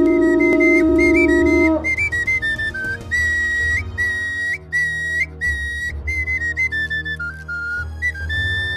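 A long, low blast on a ceremonial horn that cuts off about two seconds in, over and then followed by a high-pitched flute playing a quick melody of short stepped notes.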